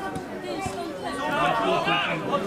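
Several people talking over one another, a jumble of nearby voices chattering, with a couple of short knocks in the first second.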